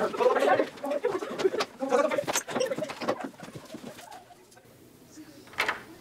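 Several young people's voices chattering and laughing in a small room for the first three seconds or so, with scattered clicks, then it goes quiet until a single sharp knock near the end.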